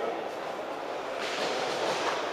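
Reverberant sports-hall background noise of indistinct voices and crowd murmur. A short, brighter hiss joins it in the last second.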